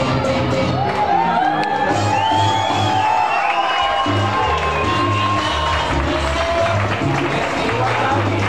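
Latin dance music played loud over a club sound system, with shouts and cheers from the crowd. The bass drops away briefly near the middle before the beat comes back.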